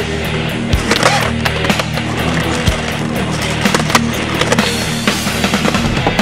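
Skateboard wheels rolling, with several sharp knocks of the board, over music.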